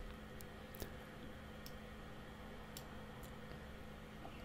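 Faint, scattered clicks of a computer mouse, about five over the few seconds, over quiet room tone with a steady low hum.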